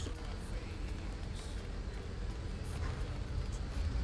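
Steady low background rumble, with a few faint light clicks and rustles, probably from the glass being handled.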